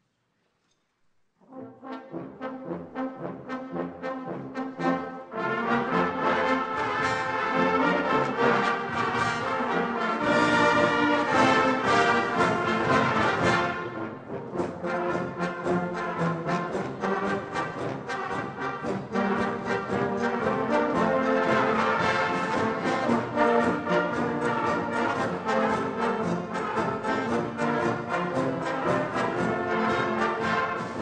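Church brass band of trumpets, saxophones and tubas playing a piece under a conductor. It enters about a second and a half in with short, detached notes and swells to the full band about five seconds in.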